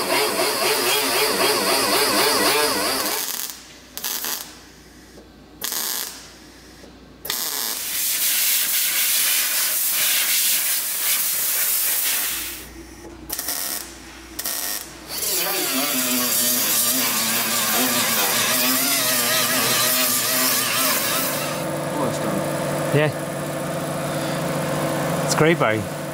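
Pneumatic die grinder with a sanding disc grinding the edge of a flared steel wheel arch. Its whine wavers in pitch under load, pauses for a few seconds with short trigger blips, then runs on. A steadier hum and a couple of sharp clicks come near the end.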